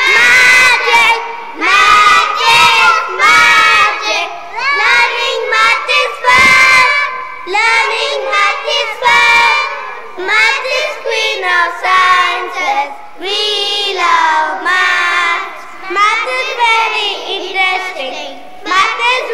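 A group of young children singing a song loudly together in unison, in short energetic phrases.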